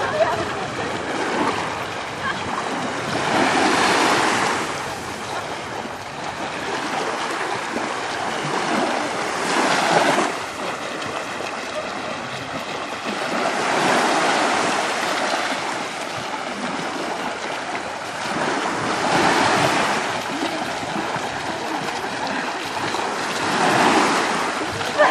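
Small waves washing onto a shallow beach, the rush swelling and fading about every five seconds, with splashing from a group of people swimming in the water.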